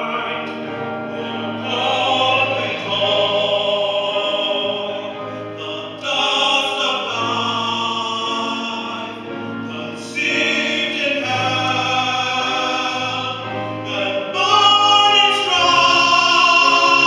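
A tenor singing a slow solo ballad in long held phrases over a string orchestra with a steady bass line. New phrases come in louder about six and ten seconds in, and the voice swells near the end.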